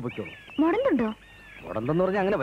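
A short, high-pitched vocal cry whose pitch rises and then falls, with faint thin whistling chirps before and after it.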